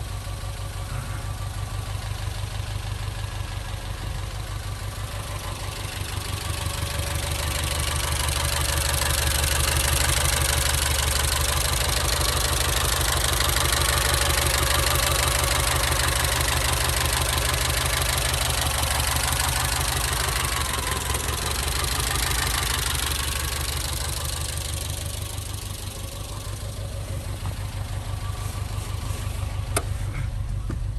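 Citroën CX GTi Turbo 2's turbocharged 2.5-litre four-cylinder petrol engine idling steadily with its bonnet open. The sound grows louder through the middle and then eases off again.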